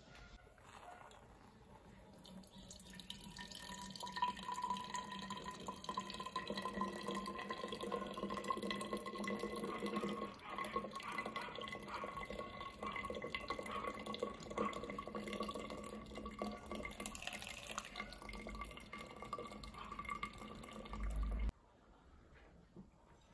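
A saucepan of water and coffee grounds heating on a gas burner with a faint hiss that grows as it nears the boil. About halfway through, the coffee is poured from the pan through a cloth strainer into a jug, a steady trickle of liquid that cuts off abruptly near the end.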